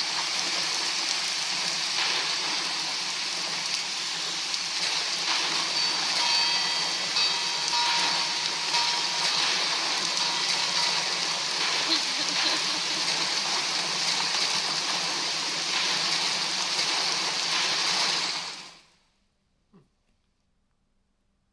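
Stormy-sea sound effect from an augmented-reality wine-label animation: a steady rush of rain and waves that fades out near the end.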